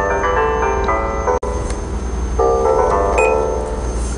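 MIDI koto neurofeedback tones playing a run of plucked notes on a Chinese scale. The notes stop after about a second and a half and come back more than halfway through, since the music plays only while the alpha percent energy is above the training threshold. A steady low hum runs underneath.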